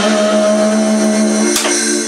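Small live band playing a song: one long, steady held note sounds over acoustic guitar. About a second and a half in, the note gives way to a short sharp attack before the phrases resume.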